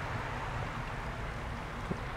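Low, steady rumble on the microphone, with a faint tap just before the end.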